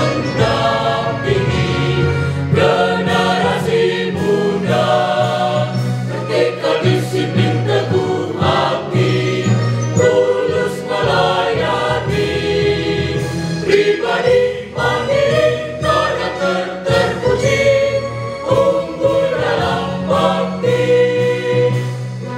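Mixed choir of women's and men's voices singing a song together in parts, continuously.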